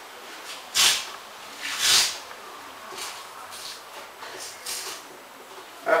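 Skin of a sole being torn off by hand: two louder tearing noises about a second apart, then several fainter ones.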